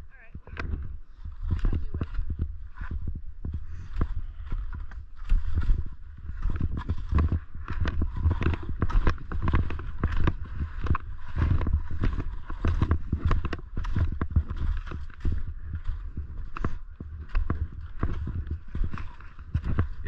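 Skis sliding and chattering over packed, tracked snow, a rapid irregular clatter and scrape, with wind rumbling low on the camera's microphone.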